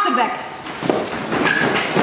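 A shouted one-word command, then a group of children running across a concrete floor, their footsteps scuffling amid excited shouts and cries.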